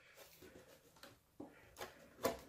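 Near silence with a few faint, short clicks: the plastic snap clips of an Asus X751L laptop's bottom case releasing as the cover is pried apart by hand.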